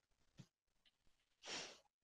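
Near silence, with one short breath out, a soft sigh, about one and a half seconds in.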